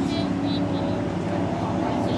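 Steady engine drone, even in level, heard under the chatter of people's voices.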